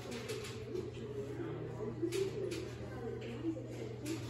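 Indoor shop ambience: a steady low hum under faint, wavering background murmur, with a couple of soft clicks about two seconds in.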